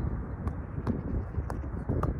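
Wind rumbling on the microphone, with a few short sharp taps through it; the last, near the end, is a football being volleyed off the foot.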